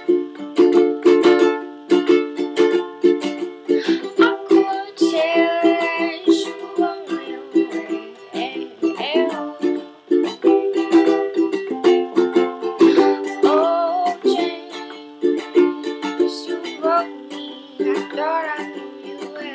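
Ukulele strummed in a steady rhythm, with a voice singing over it at times as the song goes on.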